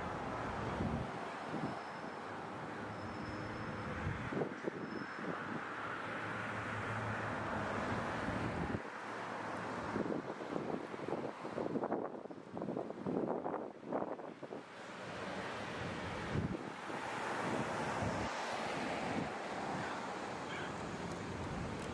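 City street ambience: traffic running by with wind buffeting the microphone, the gusts most uneven around the middle.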